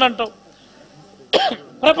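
A man coughs once, short and sharp, about a second and a half in, in a pause of his speaking.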